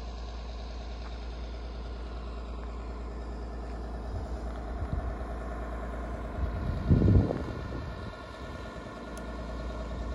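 A fire service vehicle's engine idling steadily, with a brief louder rumble about seven seconds in.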